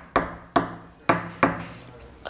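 Sharp knocks repeating about twice a second, each fading out quickly.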